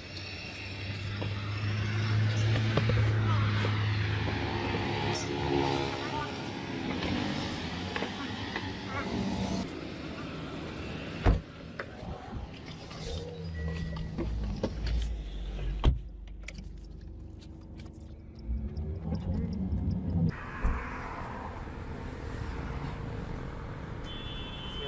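Road traffic running past close by, with a strong low engine hum early on and a pitched engine note that follows. Two sharp knocks stand out, about four and a half seconds apart, near the middle.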